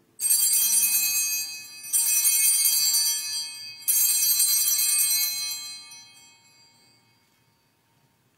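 Altar bells rung three times, each a bright cluster of high chiming tones, about two seconds apart, the last ring dying away slowly. They mark the elevation of the consecrated host.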